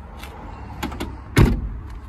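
The van's front door being swung shut: a couple of light clicks, then a single loud slam about one and a half seconds in.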